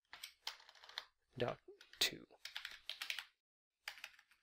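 Computer keyboard being typed on: a run of separate key clicks at an irregular pace, with the last key pressed near the end.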